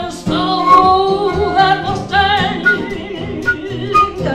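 Live acoustic blues: a woman singing with a wavering, bending voice over two acoustic guitars, with a harmonica playing along.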